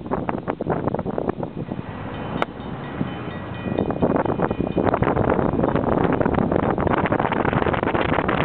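Wind buffeting the microphone of an open-topped vehicle as it drives along a road, with road and engine noise under it. The buffeting eases for a couple of seconds in the middle and picks up again about four seconds in.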